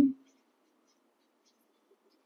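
Faint scratching of a felt-tip marker writing on a whiteboard.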